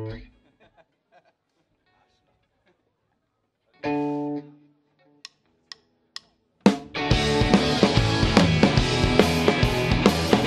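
A guitar chord rings out and fades, then a single chord is strummed and held briefly about four seconds in. Three sharp drumstick clicks count in, and the live rock band comes in together about seven seconds in: drum kit, amplified guitars and bass.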